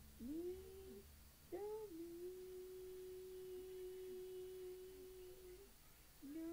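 A child's voice humming, faint, as on an old voice-memo recording: two short notes that scoop upward, then one long, steady held note lasting about three and a half seconds.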